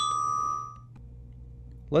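Metal bar of a percussion bell set (glockenspiel), struck with a mallet on E flat, ringing with a clear high tone that fades out within about a second.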